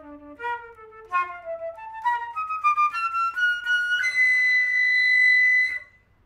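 Solo concert flute playing a rising phrase: it starts on a low note, climbs through a quickening run of short notes, and ends on a long held high note that cuts off sharply after about a second and a half.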